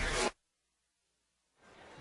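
A brief burst of static-like hiss that cuts off abruptly. It is followed by about a second of dead silence, then faint arena crowd noise fading in near the end.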